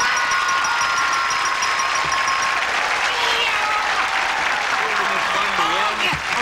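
Studio audience applauding a correctly solved puzzle, with a few voices shouting. A sustained electronic game-show chime rings over the first couple of seconds and fades out.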